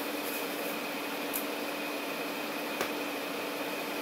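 Steady room noise with a faint electrical hum, and a soft tap about three quarters of the way in.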